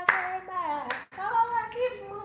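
A voice singing a gospel song with held, sliding notes, with two hand claps, one at the start and one just before a second in.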